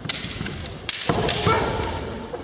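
Kendo players exchanging attacks: a sharp smack of a bamboo shinai strike about a second in, followed by a loud kiai shout.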